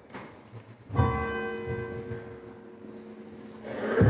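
A church bell struck once about a second in, ringing on and slowly fading. A swell of shuffling noise rises near the end.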